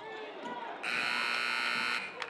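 A basketball shot clock buzzer sounds one loud, steady buzz for just over a second, starting a little under a second in, as the shot clock runs out.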